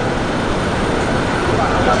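Steady jet engine noise from a JF-17 Thunder's single Klimov RD-93 turbofan as the fighter flies by, gear down.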